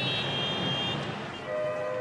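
Busy city street traffic: a steady wash of engine and road noise with a high-pitched tone in the first second, then a vehicle horn sounding steadily from about one and a half seconds in.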